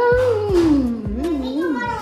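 A long, drawn-out excited vocal cry that starts high, slides down over about a second, then wavers up and down, with a second voice joining toward the end.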